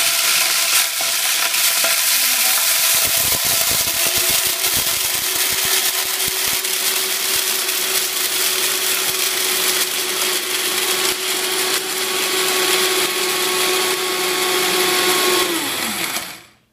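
Vitamix 5200 blender motor grinding hard popcorn kernels in its dry container, the kernels rattling and cracking against the blades for the first few seconds. Its steady high-speed motor note settles in about four seconds in, and the motor winds down with a falling pitch just before the end, leaving coarse cornmeal.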